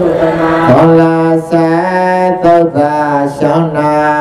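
A voice chanting a Karen Buddhist Dhamma verse in long held notes that step from one pitch to another, with brief breaths between phrases.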